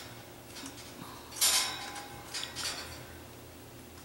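Glass beads and a beading needle clicking and rustling as the beadwork is handled, with a louder cluster of small clinks about a second and a half in.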